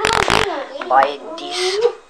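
A person's voice talking in unclear words, with a short rough noise burst right at the start.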